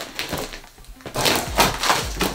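Scissors cutting into a large plastic-wrapped cardboard box, then cardboard and plastic wrap crackling and tearing as the top is cut and pulled open, much louder from about a second in.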